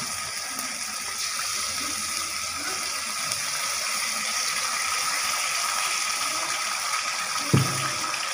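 Chili sauce sizzling in a hot wok: a steady hiss, with one thump near the end.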